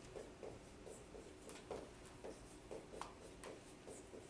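Marker writing on a whiteboard: a run of faint, short strokes, several a second.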